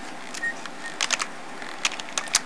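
Computer keyboard keys clicking as a search term is typed: a few scattered keystrokes, then a quick cluster about a second in and one more near the end, over a steady low hiss.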